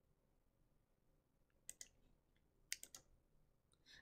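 Near silence with a few faint, short clicks at a computer: two a little under two seconds in and three more about a second later, as a notebook cell is run.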